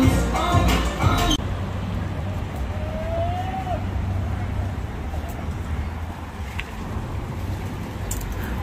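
Shop background music for about the first second, then a sudden cut to a steady rumble of street traffic.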